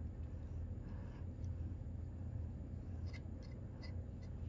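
Faint mouth and licking sounds at the tip of a Slime Licker liquid candy, a few small clicks about three seconds in, over a steady low hum.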